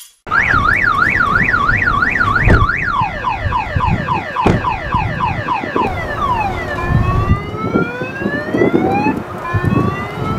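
Multi-tone car alarm going off, cycling through its patterns: a fast up-and-down warble, then a quick run of falling chirps about three a second, then slower rising sweeps. A few dull thumps sound underneath. The alarm was set off by a side window being smashed.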